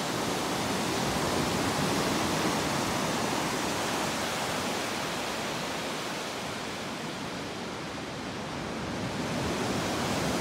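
Steady rush of surf breaking and washing up a sandy beach, easing slightly a few seconds before the end and then building again.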